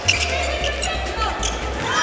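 A basketball being dribbled on a hardwood court, with short high squeaks from the floor and music playing in the arena.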